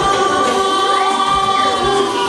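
Live band music with a male singer holding one long note over a steady beat.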